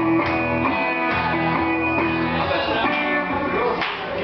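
Electric guitar played live: chords strummed about once a second, each left ringing between strokes.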